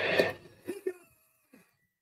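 A man's short breathy exhale, followed by a few faint murmured syllables, all within the first second.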